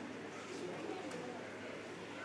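Faint, distant speech of actors on a stage over a steady low hum.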